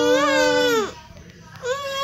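A woman's singing voice holding a long final note of a lullaby, the pitch swelling a little in the middle and falling off just before a second. Near the end a higher voice gives a short held, wailing note.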